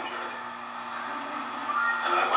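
An audience laughing: a soft, steady wash of many voices.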